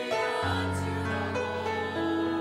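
Church choir anthem with accompaniment: held chords, with a deep bass note coming in about half a second in.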